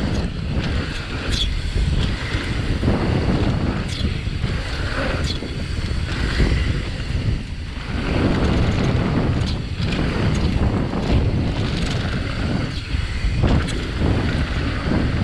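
Wind rushing over the action-camera microphone and the tyres of a downhill mountain bike rolling fast on a dry, packed-dirt trail, with scattered clicks and rattles from the bike and loose stones.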